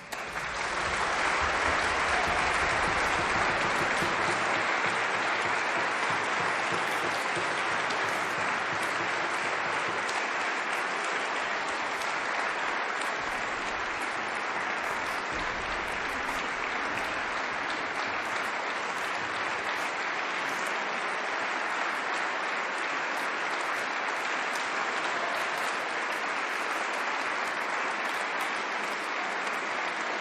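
Audience applauding, breaking out suddenly, at its fullest a couple of seconds in, then holding steady.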